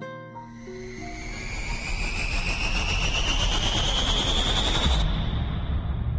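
Documentary soundtrack: a few soft plucked music notes fade out. Then a rising whoosh with a climbing whine swells for about five seconds and cuts off abruptly, over a deepening low rumble.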